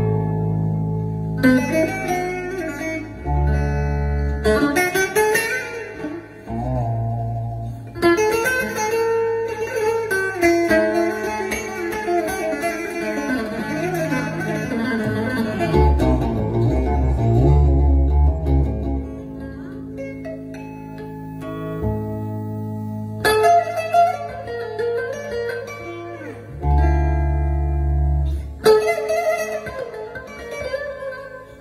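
Four-string bağlama played solo: phrases of quick plucked note runs, broken at intervals by deep low notes held for a second or two.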